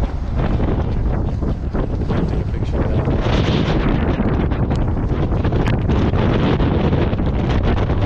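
Strong wind buffeting the microphone: a loud, gusty rumble of wind noise.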